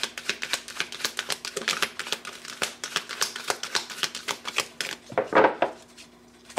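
Tarot deck being overhand-shuffled by hand: a rapid run of card clicks and slaps, several a second, with a louder burst just after five seconds.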